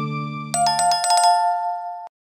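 End-screen jingle: a held low chord fades out, then about half a second in a quick run of bright chime-like notes settles into two sustained high tones.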